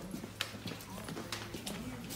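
A dog's nails clicking and tapping irregularly on a tile floor as it walks, with faint voices in the background.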